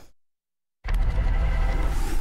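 A dead gap of nearly a second, then a newscast transition sting cuts in suddenly: a steady, bass-heavy rumbling music bed with held tones under it.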